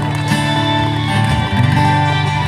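Acoustic guitar strumming chords with a violin playing along, live; the chord changes about one and a half seconds in.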